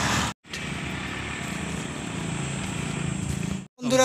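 Steady outdoor background noise with a low rumble and faint hiss, broken by an abrupt cut to silence just after the start and another just before the end.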